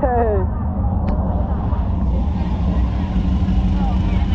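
Low, steady rumble of a vehicle engine running close by, under faint crowd voices in a street, with a short voice right at the start and a single click about a second in.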